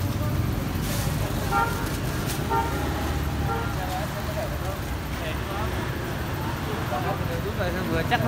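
Steady low rumble of street traffic and idling engines, with a few faint short horn toots about one to three and a half seconds in.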